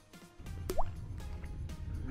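A single short plop with a quick rise in pitch, about two-thirds of a second in: a small calico crab dropped into the creek water. Under it are a low wind rumble and faint background music.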